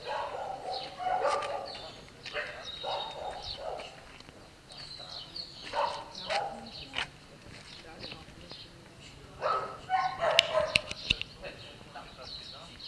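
Dogs barking now and then from a dog shelter's kennels, mixed with distant, indistinct conversation.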